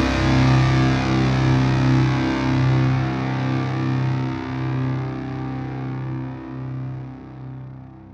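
A heavy metal song's final distorted electric guitar chord, held and ringing out, fading slowly away.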